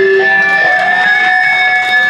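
Live heavy electric guitars ringing out in long, loud held tones, with the drums briefly stopped.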